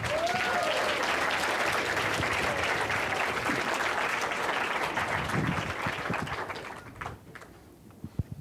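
Audience applauding after a speech, a dense clapping that holds steady for about six seconds and then dies away.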